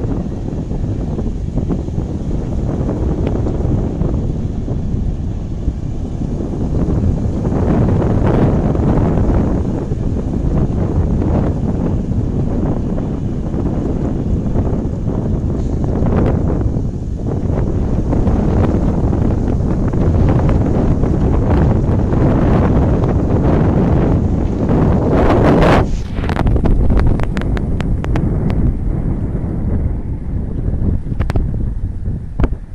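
Strong gusty wind buffeting the microphone, a loud rumbling rush that swells and dips throughout, with a short burst of crackling near the end.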